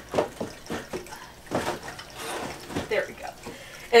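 Stuck lid and bin of a wooden potting bench being worked shut by hand: a string of irregular wooden knocks, clunks and clicks.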